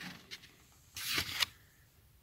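A brief, soft rustle of paper pages as an open book is handled, about a second in.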